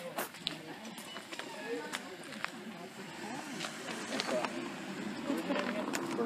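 Indistinct chatter of several people talking over one another, with a few light clicks.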